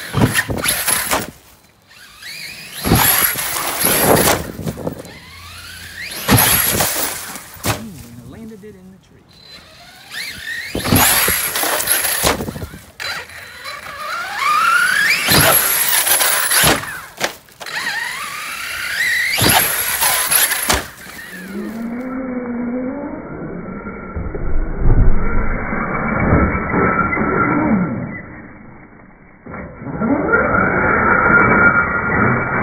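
Team Redcat TR-MT8E BE6S 1/8-scale brushless electric RC monster truck making run after run, its motor whine rising in pitch as it speeds up, in about six separate bursts. The last several seconds sound duller and lower-pitched.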